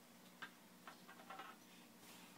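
A few faint, irregular taps of a baby's hands on an upturned plastic bowl played as a drum.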